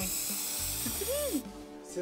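Aerosol spray-paint can spraying onto a water surface, a steady hiss that cuts off about one and a half seconds in.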